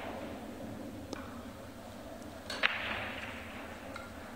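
A faint click about a second in, then one sharp, loud click about two and a half seconds in, followed by a short rustle, over quiet room tone.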